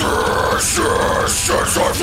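Male deathcore vocalist doing guttural growls and harsh screams into a close microphone, in short, strained syllables with breathy hiss on the consonants.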